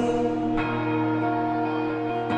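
Live music recorded from the audience: a sustained electric guitar chord ringing out, its notes held steady with a bell-like tone, between sung lines.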